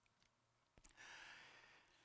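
Near silence, then a brief click and a man's faint intake of breath lasting about a second, fading near the end.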